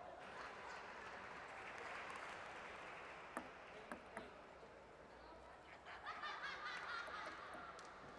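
Three sharp clicks of a celluloid table tennis ball bouncing, a little under half a second apart, in a quiet sports hall with a steady hiss. Near the end a voice calls out in the hall.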